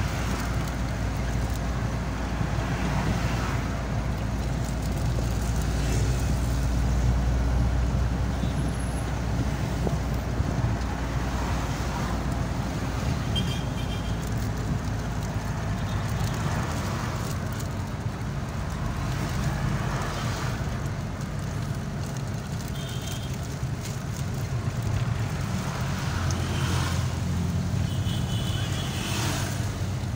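A moving vehicle heard from inside its cabin: steady engine hum and road noise, with surrounding traffic.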